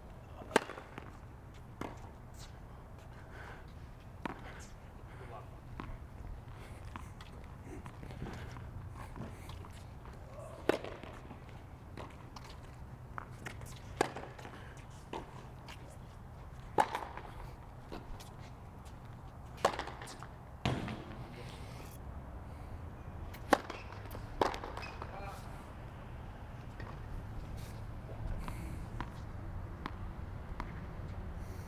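Tennis balls struck by rackets during serve practice on a hard court: sharp pops every few seconds, with fainter ball bounces between them.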